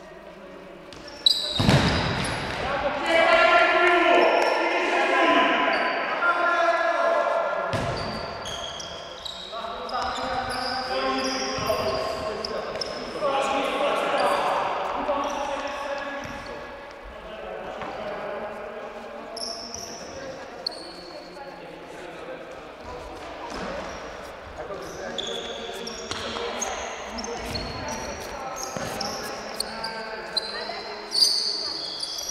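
Indoor futsal game in an echoing sports hall: sharp ball kicks, the loudest about a second in and another near eight seconds, amid players' shouts and short high squeaks of shoes on the court floor.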